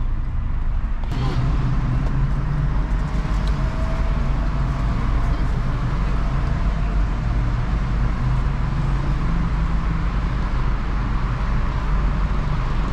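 Steady low rumble of a car moving slowly, heard from inside its cabin, with road and street traffic noise.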